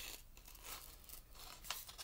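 Scissors snipping through a folded paper plate: a few faint cuts, one at the start and a couple near the end, with soft paper handling between.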